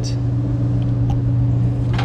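A steady low hum, with a couple of faint ticks from handling wires.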